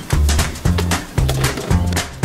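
Brisk polka background music with a bouncing bass line, about two bass notes a second, under a steady percussive beat.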